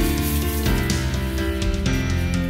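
Background music: a song with sustained chords and a steady beat.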